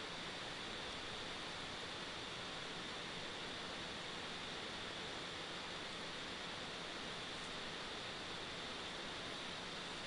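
Steady, even background hiss with a faint high steady tone running through it, and no distinct events.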